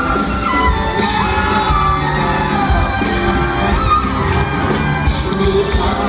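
Live swing big band playing a song in a large arena, its horn section to the fore, with shouts and whoops from the crowd.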